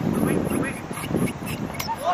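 People on and around a football pitch shouting short, excited calls during play, with a sharp knock near the end.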